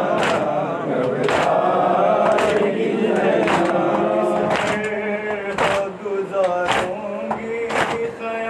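Men's voices chanting an Urdu noha, a Shia lament, together. A sharp beat comes about once a second in time with the chant, typical of matam, hands striking chests.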